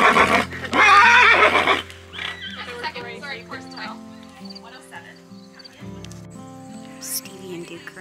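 A horse neighing loudly in the opening two seconds: a long, wavering whinny, the horse calling out to a companion horse. After that there is quieter background music with sustained notes.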